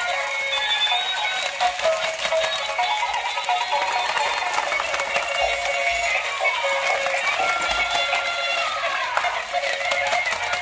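Several battery-operated light-up walking toys playing their tinny electronic tunes at once, thin overlapping melodies with no bass.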